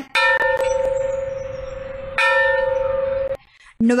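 Church bell rung by hand with a rope, struck twice about two seconds apart, each stroke ringing on with a steady tone. The ringing is cut off suddenly near the end.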